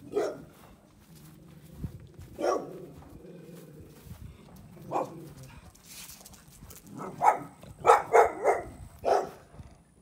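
A dog barking: single barks every two to three seconds, then a quicker run of barks near the end.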